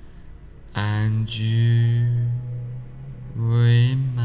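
A deep voice chanting one long, steady low note, like a meditation mantra. A second chant starts near the end.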